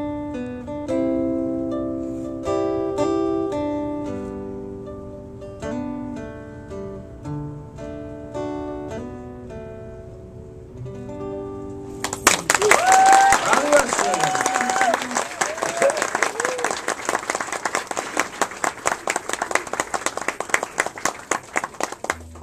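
Acoustic guitar playing the song's closing notes, single picked notes ringing out one after another. About halfway through, audience applause breaks out suddenly, with a few whoops and cheers over the clapping.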